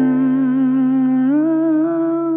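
Music: a woman's voice holds a long wordless note that wavers in pitch and steps up about halfway through, over a steady low accompaniment.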